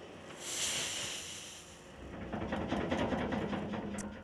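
Cat K Series small wheel loader dumping loose material from its raised bucket: a hissing pour starts about half a second in and fades out, then the machine's engine keeps running with a low, steady sound.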